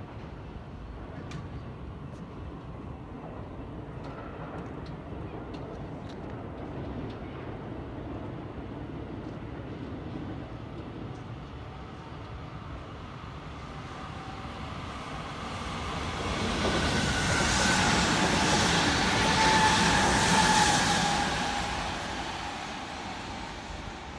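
A JR Hanwa Line electric train passing on the tracks below, swelling in from about the middle, loudest for a few seconds with a whine over its rumble, then fading away.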